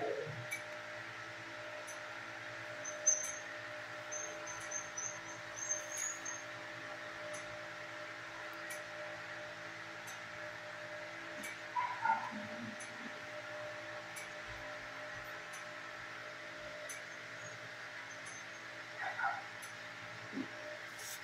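Dog whining briefly a few times, with short wavering whimpers about twelve and nineteen seconds in, over a steady machine hum. Faint high squeaks come about three to six seconds in.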